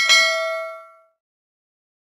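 A notification-bell sound effect: a single bright ding that rings out and fades away within about a second.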